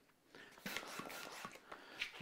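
Hand balloon pump inflating a long red twisting balloon: a faint, airy hiss of pumped air with a few small clicks and rubber sounds.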